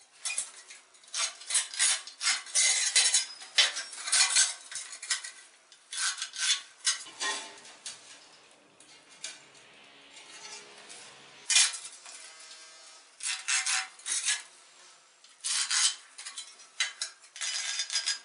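Steel file rasping against the edge of a ceramic wall tile in several bursts of quick scraping strokes, with a quieter stretch of handling in the middle and a sharp click about midway.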